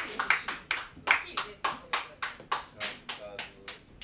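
Handclaps in a steady, even beat of about four claps a second, growing quieter toward the end.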